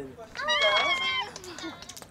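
A woman's voice in a short, high-pitched exclamation that rises and falls, followed by a faint lower voice.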